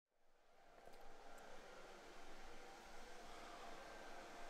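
Near silence: faint room tone with a faint steady hum.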